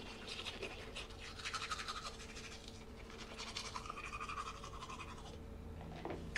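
Toothbrush scrubbing teeth in quick, faint, repeated strokes, stopping near the end.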